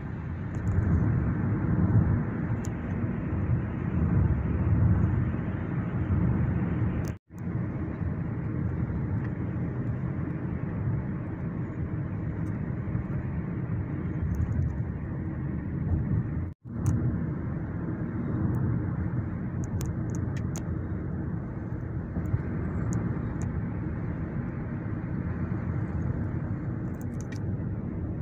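Steady road noise heard from inside a moving car: engine and tyres on a wet road, a dense low rumble. It breaks off abruptly twice, about seven and seventeen seconds in.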